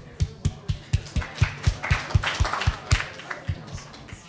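Audience applause, with one pair of hands clapping close to the microphone at about four claps a second, fading out near the end.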